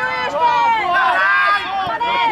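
Shouting voices: high-pitched calls following one another without a pause.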